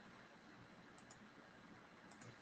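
Near silence: faint room tone, with a couple of faint mouse clicks about a second in.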